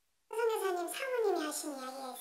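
Speech: a woman's voice, pitched unnaturally high as if disguised, speaking Korean. It starts after a brief silence about a third of a second in.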